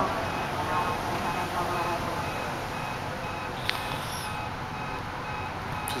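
Space Shuttle Discovery's ascent heard from miles away as a steady, continuous rumble. An alarm beeps in a steady repeating pattern over it, and faint voices come and go.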